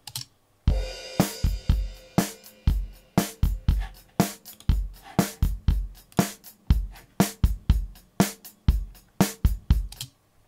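Multitrack drum kit recording (kick, snare, hi-hat and cymbals) playing back through a dry bus and a heavily compressed parallel-compression bus, starting about a second in. The two buses start out of time, with an obvious delay and phasing from the compressor plugin's uncompensated latency, and come into time alignment once delay compensation is switched on partway through.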